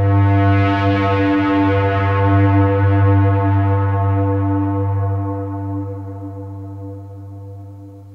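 Therevox ET-4.3 synthesizer playing through a distortion pedal, holding one low droning note dense with overtones. It fades away over the last three seconds.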